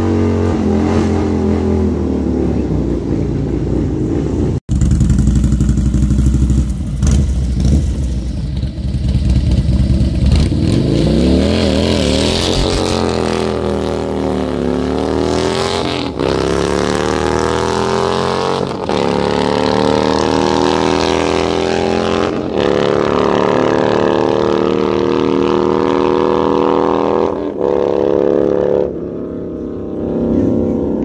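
Drag-racing engines at wide-open throttle. A car's engine comes first, then a motorcycle revving and launching, its pitch climbing and dropping back with each upshift, about four times, as it pulls away down the track.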